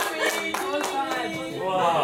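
Audience clapping that dies away within the first half second, over voices and laughter in the room.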